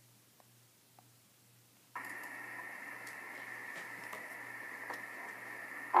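Near silence, then about two seconds in a steady electronic hiss with a faint high tone switches on suddenly and holds steady.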